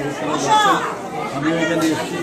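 Several people talking over one another in a room, with one higher voice rising and falling about half a second in.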